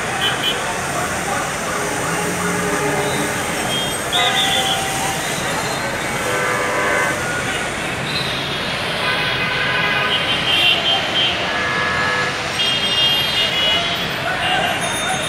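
Busy street noise heard from high above: a crowd of many voices, traffic running, and short horn toots several times.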